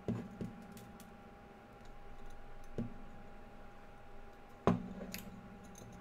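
Faint, scattered clicks and taps of sterling silver wire against a steel ring mandrel as a wire-wrapped ring band is bent around it, with a few sharper clicks among them.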